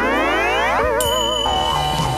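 Cartoon-style comedy sound effect: a rising, slide-whistle-like glide for nearly a second, then a wobbling boing, then held steady tones.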